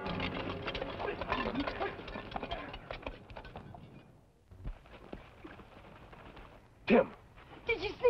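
Hooves of several galloping horses and a horse-drawn wagon, fading away over the first four seconds. A short loud cry comes near seven seconds, and a voice starts just before the end.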